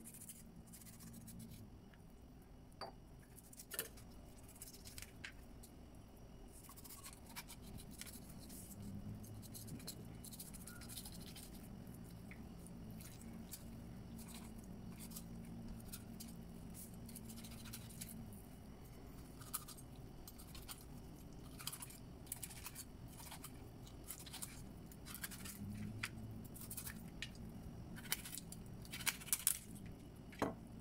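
Kitchen knife filleting a whole grouper on a cutting board: faint scraping strokes and scattered light clicks as the blade works along the fish's backbone and touches the board, with a quick run of louder clicks near the end.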